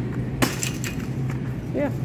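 A single sharp clatter about half a second in, with a brief metallic rattle after it, as a small boxed cheese is dropped into a wire shopping cart. A steady low hum runs underneath.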